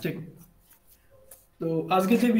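A man lecturing: his phrase trails off just after the start, a pause of about a second and a half with a few faint clicks follows, and he starts speaking again near the end.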